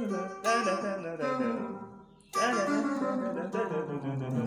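Electric guitar playing blues-scale licks: two short phrases of picked notes, the second starting about two seconds in, each one fading out.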